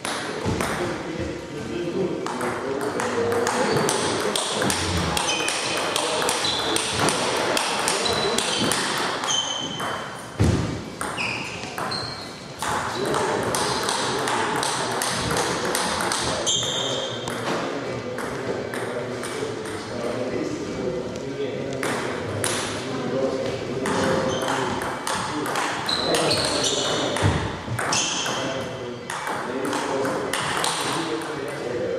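Table tennis rallies: the ball clicks again and again off the bats and the table, with indistinct voices in the hall.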